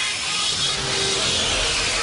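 Break in an electronic dance track: a loud, even wash of noise with a faint tone sliding down in pitch, the kind of noise sweep that builds to a drop.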